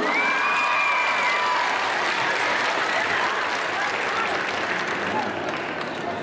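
Audience and cheerleaders clapping in a large hall, with a long high-pitched cheer from a voice over the first second and a half. The applause eases slightly near the end.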